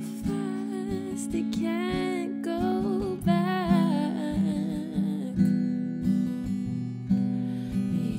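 Acoustic guitar picked in a steady pattern, with a wordless sung melody over it in two phrases.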